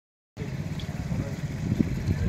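A brief gap of dead silence, then a steady low rumbling outdoor background noise that swells slightly near the end.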